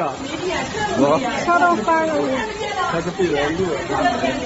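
Several people talking and exclaiming over one another, over a steady hiss of rushing floodwater.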